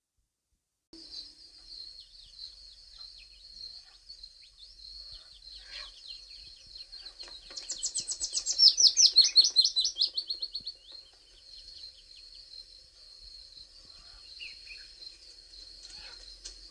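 Outdoor birdsong: a steady high-pitched chorus in the background, and near the middle a songbird's loud rapid trill of repeated notes falling in pitch over about three seconds.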